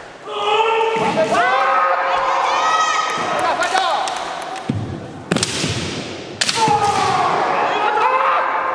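Kendo kiai: two fighters' long, overlapping held yells. About five seconds in come three sharp impacts of bamboo shinai strikes and a foot stamp on the wooden gym floor, then another long yell.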